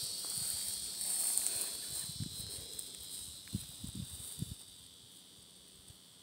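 Steady high-pitched chorus of insects chirping in a grassy field at dusk. A few soft low thumps of phone handling or footsteps come in the middle, and the overall sound grows quieter as the movement stops.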